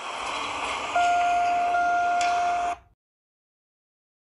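A horn sounding one steady note over a rushing noise, starting about a second in and cutting off abruptly together with the noise near three seconds, with a sharp click shortly before the end.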